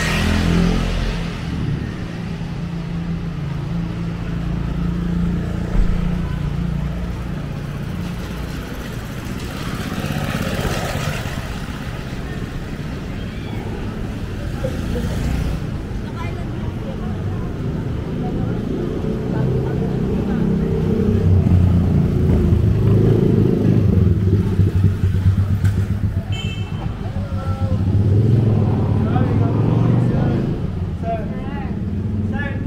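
Night street ambience: motorcycle and car engines running and passing, with people's voices in the background. It grows louder about two-thirds of the way through.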